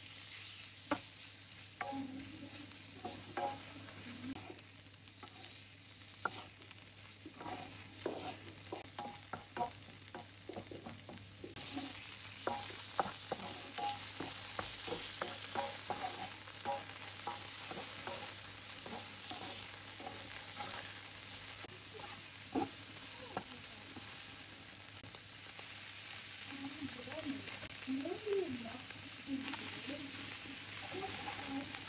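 Diced pork belly and shallots sizzling in a hot nonstick frying pan, stirred with a wooden spoon and a slotted spatula that click and scrape against the pan. The sizzle turns louder about ten seconds in.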